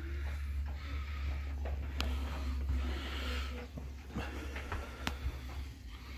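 Handheld phone microphone handling noise: a steady low rumble with a few sharp clicks, and a soft hiss about three seconds in.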